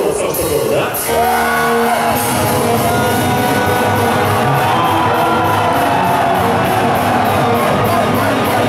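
A power metal band starts playing live about a second in, after a moment of shouting: electric guitars with held notes over drums keeping a steady cymbal beat.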